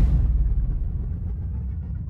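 A deep low rumble with nothing higher above it, slowly fading away.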